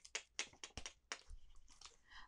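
Quiet clicks and rustles of hardcover picture books being handled and swapped, a quick run of small taps in the first second, then fainter ticks.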